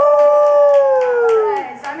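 A person's long, high held vocal cry, like a drawn-out cheer, sliding slowly down in pitch and stopping about one and a half seconds in, with a few scattered hand claps.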